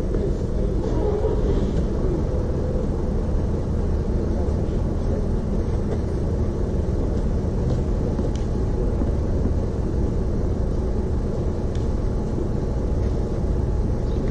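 Steady low rumble of outdoor background noise, with faint distant voices in the first couple of seconds.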